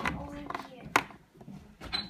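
Quiet handling noise with two sharp clicks about a second apart, as fishing line is worked back and forth under an iPhone battery to cut through its adhesive strips. A faint voice-like sound comes at the start.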